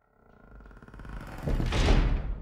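Outro sound effect: a low rumble with fast rattling clicks, swelling steadily from nothing to a loud crash near the end.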